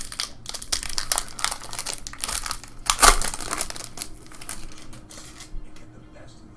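Trading card pack wrapper crinkling as hands pull it open and off the cards, with a loud crackle about three seconds in, dying away near the end.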